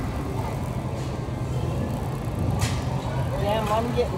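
Steady low rumble of a shopping cart and a manual wheelchair rolling over a hard store floor, with a brief hiss about two and a half seconds in. A voice starts near the end.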